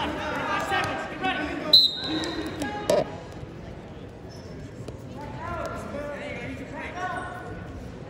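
A referee's whistle is blown once in a short steady blast, starting the wrestling bout. About a second later comes a sharp thump, with crowd and coaches shouting in the gym around it.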